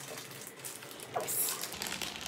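Clear plastic wrapping crinkling and rustling as a carbon handlebar in its plastic bag is drawn out of a cardboard box, with a sharper crinkle about a second and a half in.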